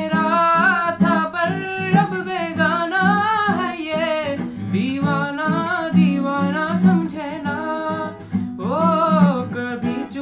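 A boy's voice singing a slow melody with long, gliding held notes, accompanied by an acoustic guitar.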